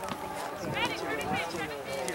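Indistinct voices calling out across an outdoor soccer field, several short high-pitched shouts over a steady open-air background.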